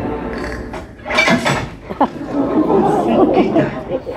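Indistinct speech that the recogniser could not make out, with a brief lull about a second in.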